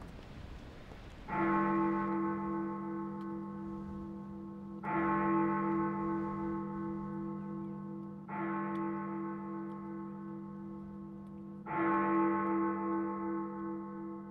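A large tower clock bell striking the hour: four slow strokes, about three and a half seconds apart, each ringing on into the next.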